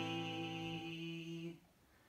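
A held note in a solo song for man's voice and acoustic guitar, ringing steadily and then cutting off about one and a half seconds in, leaving a near-silent pause.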